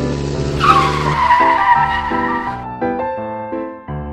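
A tire-screech skid sound effect whose pitch slides slightly down, starting about half a second in and fading out over about two seconds, over background music.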